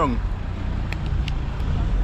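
Steady low outdoor rumble with a couple of faint short clicks about a second in.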